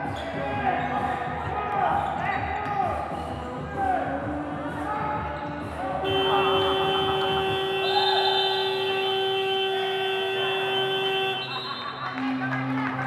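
Basketball play on the court, the ball bouncing, then about six seconds in the scoreboard buzzer sounds one long steady tone for about five seconds and cuts off: the game clock has run out.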